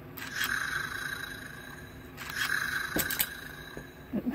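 Electronic toy snake with light-up eyes sounding twice through its small speaker: two bursts of about a second each, a steady tone over a hiss, with a couple of sharp clicks near the end of the second burst.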